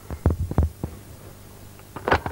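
Steady low mains hum of an old tape recording, with about four quick, soft thumps in the first second.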